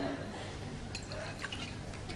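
Sherry being poured into a glass, with a few light clicks of glass about halfway through.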